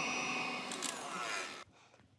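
Electric stand mixer with a whisk attachment running on high, beating egg whites into stiff, glossy meringue peaks; the steady whir fades out about one and a half seconds in.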